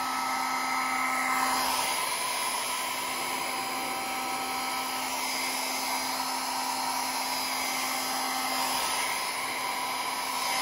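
Small handheld hair dryer running steadily, a blowing rush with a motor whine that grows fainter about two seconds in and stronger again near the end.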